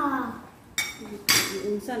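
Two clinks of metal cutlery against ceramic plates, about half a second apart, each with a brief ring.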